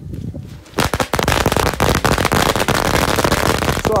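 A long string of firecrackers (a saravedi) going off: about a second in, a rapid, dense, continuous run of sharp bangs begins and keeps going without a break.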